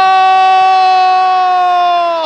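A football commentator's goal call: one long, loud, held shout of the scorer's name "Cunha" on a high, steady pitch that sags slightly near the end.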